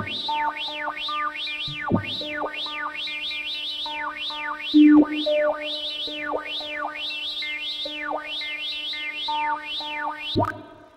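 Gnome sort sorting-algorithm sound animation: computer-generated beeps whose pitch follows the height of the bars being compared and swapped. The tones sweep quickly down and back up in a zigzag, about twice a second, as each element is carried back to its place.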